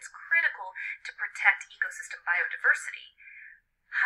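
Only speech: a narrator's voice from a played-back educational cartoon, thin with no low end, with a brief pause near the end.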